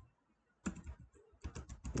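Computer keyboard typing: a quick run of keystrokes that starts about half a second in, after a brief quiet.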